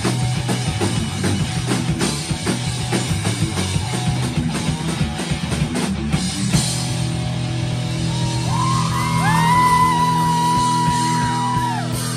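A live rock band plays loud guitars and drum kit. About halfway through, the drumming stops and the band rings out on a sustained chord, with long high notes that slide up and down in pitch over it.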